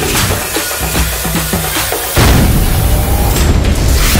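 Logo-intro music sting: a dense, noisy sound-effect bed with short falling tones, then a deep boom hit about two seconds in, after which it stays louder and heavier.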